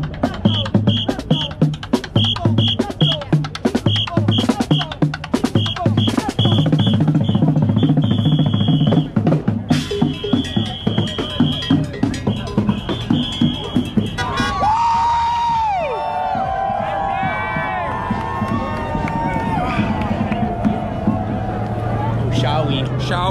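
Street drummer playing a drum kit and plastic buckets: a fast, steady beat of snare and bass-drum hits. About fourteen seconds in, the drumming stops and a steadier sound with sliding, rising and falling tones takes over.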